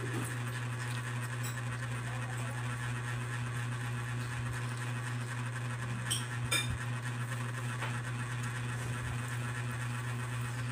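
A steady low hum, with a few light clinks of a metal spoon and fork against a plate about six seconds in.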